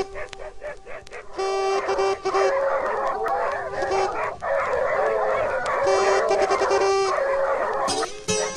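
A pack of dogs barking and baying together over music with a steady held note. The barking builds up about a second and a half in and carries on, dense and overlapping.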